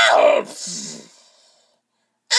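A person's pained cry, falling in pitch and breaking off about half a second in, followed by a short hiss that fades out, then silence.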